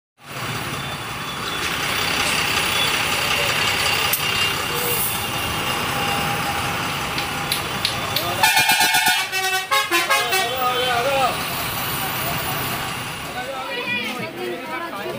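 Dense street traffic and crowd noise around buses and motorbikes. About eight seconds in a vehicle horn sounds in a rapid pulsing blast lasting about a second, followed by voices.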